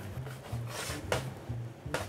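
Soft background music with a low bass line. A knife taps a couple of times on a stainless steel worktop as it cuts pasta dough into small cubes.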